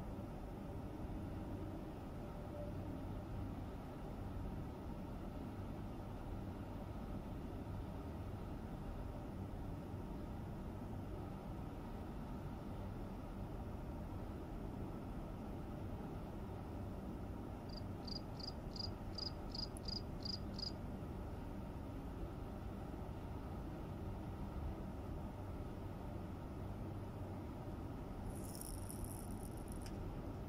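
A cricket chirping: a short run of about nine evenly spaced high chirps, about three a second, a little past the middle, over a steady low background rumble. A brief high hiss comes near the end.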